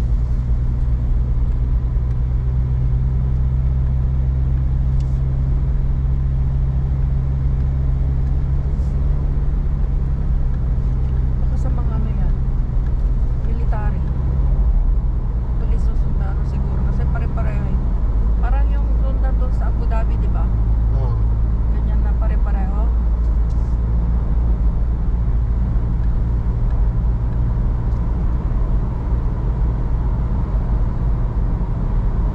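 Inside a car cruising on a highway: a steady low engine and road drone, whose tone shifts about two-thirds of the way through. Faint voices come in through the middle.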